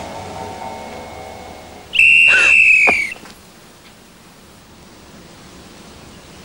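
One loud, shrill whistle blast about two seconds in, lasting about a second and dropping slightly in pitch as it ends. It follows sustained steady tones that fade away.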